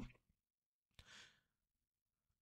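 Near silence, with one faint, short breath drawn by a man at a close microphone about a second in.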